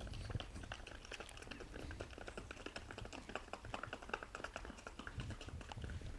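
Faint hoofbeats of a horse led in hand on stone paving: a quick, irregular run of light clicks.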